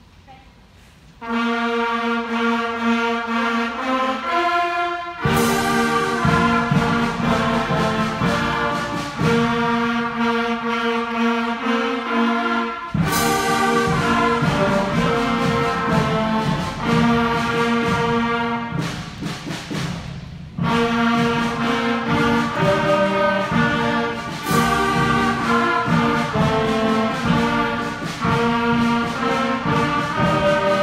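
Beginner concert band of sixth-graders playing a fanfare in concert B-flat, brass and woodwinds in sustained chords. The band comes in about a second in, and three loud percussion crashes mark the phrases, with a short lull near two-thirds of the way through.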